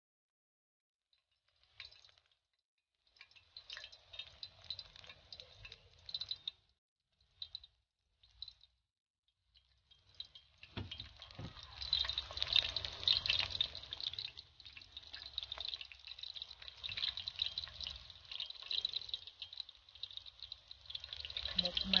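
Battered squash blossoms deep-frying in a pan of hot oil: a crackling sizzle, patchy at first, then steady and louder from about ten seconds in.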